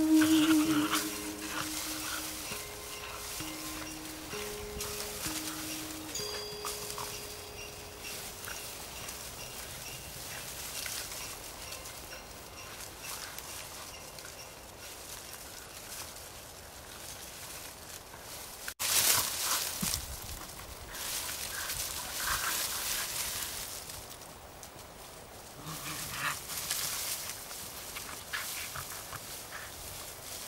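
The last soft notes of background music fade out. About two-thirds of the way in, louder bursts of rustling and scuffling come from two dogs tussling over a leafy branch in the snow, with a second burst near the end.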